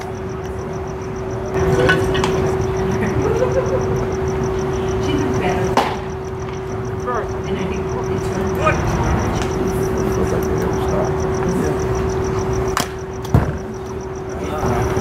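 Spectators and players chattering in the background over a steady low hum. A few sharp knocks cut through, the loudest a crack near the end.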